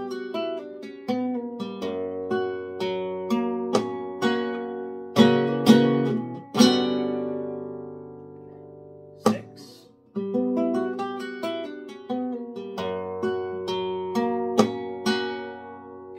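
Nylon-string flamenco guitar (Manuel Rodriguez Model FF) playing a soleá: a run of plucked arpeggio notes, then a few hard strummed chord accents about five to six and a half seconds in that are left to ring and fade. A single sharp struck chord comes a little past nine seconds, and after a brief pause the arpeggio pattern starts again.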